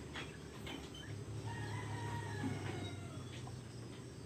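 A rooster crows once, one long call starting about one and a half seconds in and falling away at its end, over a steady low hum.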